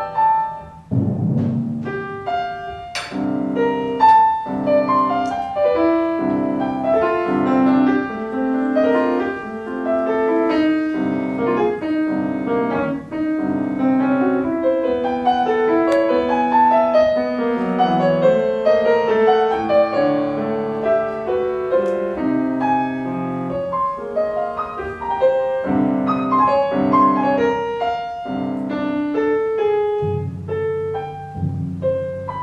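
Grand piano playing the orchestral reduction of a timpani concerto: a busy passage of many quickly changing notes and chords.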